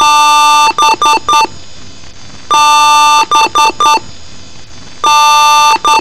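A PC BIOS power-on self-test beep code, run through a pitch-layered 'G Major' effect so that each beep sounds as a harsh, chord-like tone. It goes one long beep followed by three quick short beeps, and the pattern repeats about every two and a half seconds over a steady hiss.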